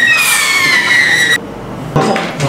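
Whistling firework rocket: a high, shrill whistle over a rushing hiss, gliding slowly down in pitch, that cuts off suddenly about a second and a half in.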